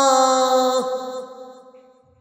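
A man's voice reciting the Quran in chanted tajweed style, holding a long sustained note at the close of a verse. About a second in, the pitch dips and the note breaks off, then dies away to silence.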